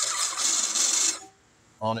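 Cordless drill spinning a step bit pressed lightly against the back of a freshly drilled hole in a copper bus bar, deburring the blowout: a high, scraping hiss for about a second that then stops.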